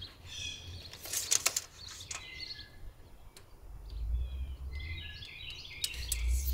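Small birds chirping in the background, with a few sharp clicks about a second in and a low rumble in the second half.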